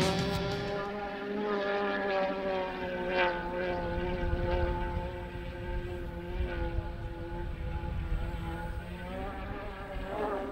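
Racing hydroplane engine running at high revs on a test lap, heard across the water as a steady high-pitched note that dips slightly and rises again near the end.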